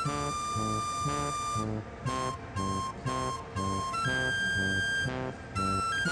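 Background music: a repeating bass line of short notes, about two to three a second, under a melody of held high notes.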